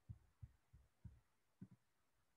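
Near silence, with faint low thumps every few tenths of a second.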